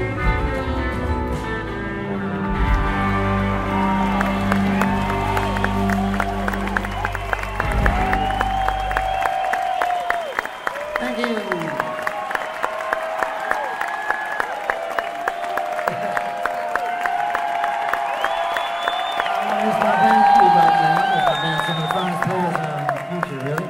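A live band holds the closing chords of a slow song for about nine seconds, with the bass and guitars ringing out. A concert audience starts applauding a few seconds in and carries on applauding and cheering, with shouts and whistles, after the band stops.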